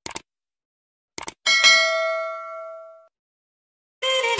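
Subscribe-intro sound effects: a pair of quick clicks, another pair about a second later, then a single bell ding that rings and fades over about a second and a half.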